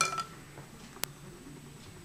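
Quiet room tone with a faint steady high-pitched whine, broken by a single sharp click about a second in.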